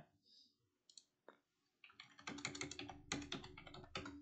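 Computer keyboard keys typed in a quick run starting about two seconds in, after a couple of single clicks: a number being keyed into a calculator.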